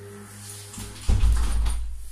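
A window being shut, with a sudden low thump and rumble about a second in. The steady hum of street noise from outside fades away as it closes.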